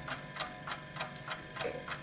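A clock ticking faintly and steadily, about four ticks a second.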